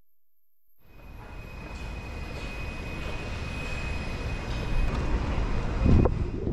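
Rumble of a Onewheel rolling over rough asphalt with wind rushing over the microphone, and a faint steady high whine on top. It starts about a second in, builds steadily and is loudest near the end.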